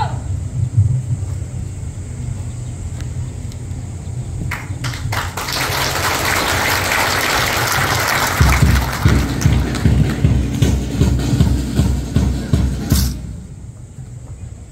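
A crowd applauding for a few seconds, followed by music with a steady low beat that stops sharply about a second before the end.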